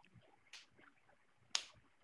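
Faint, nearly quiet room sound over a video call, broken by two short, sharp hissy clicks, the louder one about one and a half seconds in.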